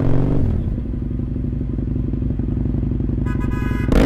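Motorcycle engine heard from on board, its revs dropping as the bike slows and then running steadily at low revs. A short horn blast sounds about three seconds in, as pedestrians step out in front of it.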